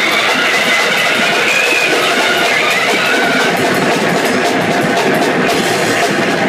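Loud live noise rock: a drum kit hit hard and continuously, cymbals crashing, inside a dense wall of distorted noise. A wavering high tone rides over it in the first few seconds.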